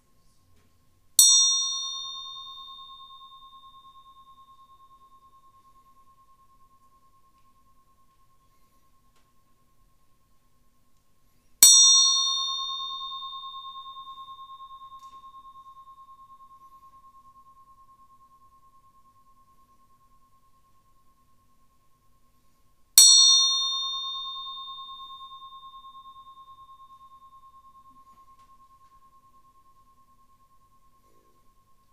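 A small meditation bell struck three times, about eleven seconds apart. Each strike rings one clear high tone that fades slowly over several seconds, its bright overtones dying away first.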